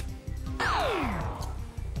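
Game-show background music with a steady low beat under a ticking countdown, and about half a second in a single falling swoop sound effect that drops from high to low pitch over about half a second.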